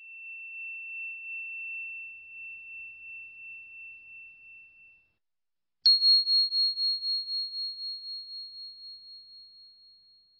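Two clear ringing tones, each a single pure pitch: a lower one that rings and fades out over about five seconds, then, after a short silence, a sharp strike about six seconds in and a higher tone that dies away slowly.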